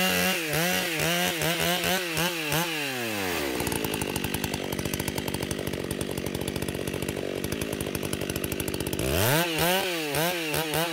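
Stihl two-stroke chainsaw revving up and down in quick throttle bursts while limbing a felled tree, dropping to a steady idle about three and a half seconds in, then revving hard again near the end.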